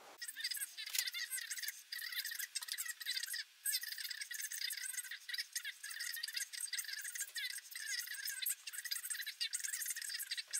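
Continuous fast, high-pitched rattling and clinking with no low end, briefly dropping out about three and a half seconds in.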